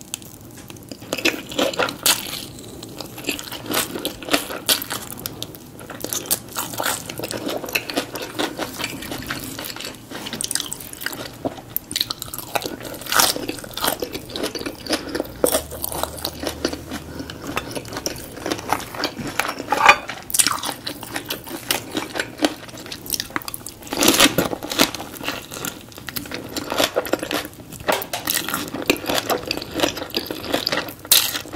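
Close-miked chewing of a fresh Vietnamese spring roll (rice paper wrapped around shrimp, pork belly, lettuce, herbs and vermicelli): irregular wet crunching and mouth clicks.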